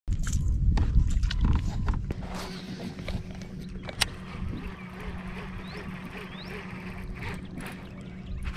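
Baitcasting reel being cranked in after a cast, a steady low whir, with heavy low rumbling noise in the first two seconds and a single sharp click about four seconds in.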